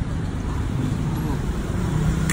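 Steady low rumble of road traffic, with faint voices in the background.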